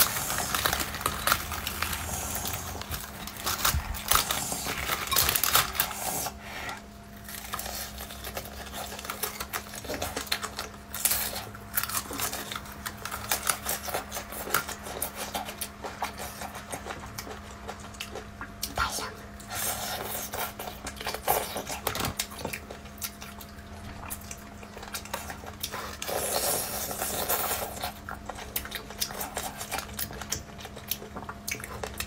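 Crispy battered fried chicken being torn apart by hand and eaten close to the microphone: dense, irregular crackling and crunching of the fried coating, with wet tearing of the meat and chewing, over a faint steady low hum.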